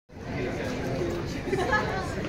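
Overlapping voices of people talking in a large public hall, a general chatter without clear words.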